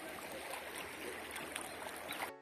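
Muddy, flood-swollen river rushing past in a steady, even wash of moving water.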